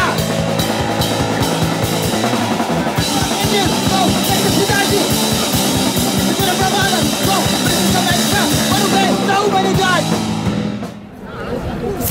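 Live hardcore punk band playing: distorted electric guitars, bass and fast drums with shouted vocals. The music drops away about a second before the end.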